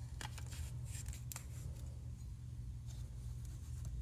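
Faint clicks and rustles of a paper business card being worked into the air gap between a string trimmer's flywheel and its ignition coil, over a low steady hum.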